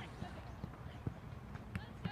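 Outdoor football-match sound: faint distant players' voices with scattered low thumps and a sharp click near the end.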